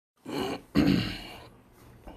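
A man clearing his throat: two short voiced rasps, the second louder and fading away.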